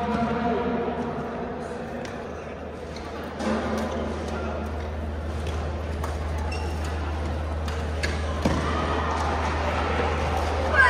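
Badminton rally in a large indoor hall: rackets striking the shuttlecock as short sharp hits a couple of seconds apart, with echoing voices and a steady low hum in the background.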